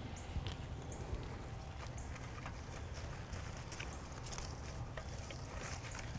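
Faint handling sounds of cut flowers and foliage: soft rustles and a few small clicks as camellia stems and leaves are worked into a flower arrangement, over a low steady outdoor rumble.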